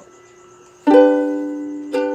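A ukulele strummed once about a second in, most likely an open G major chord to start the song, left ringing and fading, then strummed again just before the end.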